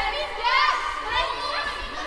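Girls' choir voices in a contemporary choral piece: many high voices overlapping in short gliding cries and calls rather than words, loudest about half a second in, with a long reverberant cathedral echo.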